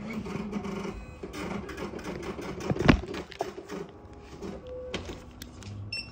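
Receipt printer at a post office counter running, with a steady mechanical hum and rapid clicking. A single thump comes about three seconds in.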